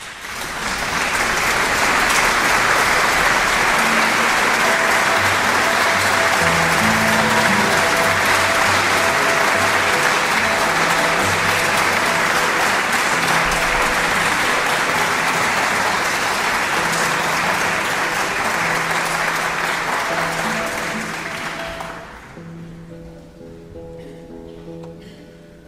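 Audience applause, dense and steady for about twenty seconds, dying away near the end; faint sustained notes sound under it.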